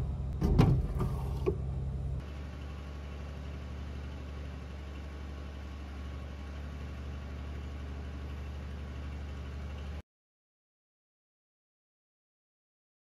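A few knocks and clatter from handling a plastic water bottle, then a steady low drone of noisy machinery, an engine running at an even idle, which cuts off suddenly about ten seconds in.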